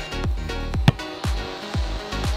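Electronic background music with a steady beat, about two beats a second, over sustained chords.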